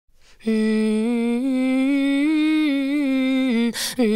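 A woman humming unaccompanied, a held note that steps gently up and down in a slow melody. It is broken near the end by a quick breath in before the humming goes on.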